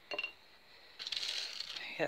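A jar of cat-litter basing grit being handled: a short clink at the start, then a dry, gritty rattle of granules from about a second in.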